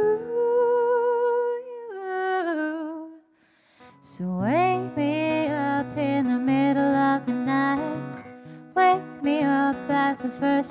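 A woman's wordless humming over her own steel-string acoustic guitar. A long held vocal note with vibrato steps down and fades into a brief pause about three seconds in. The guitar then comes back in under a hummed line that slides up into the melody.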